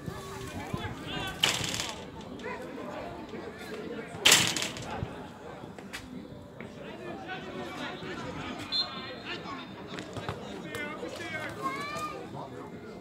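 Shouts and calls of footballers across an outdoor pitch, with two brief loud bursts of noise about one and a half and four seconds in.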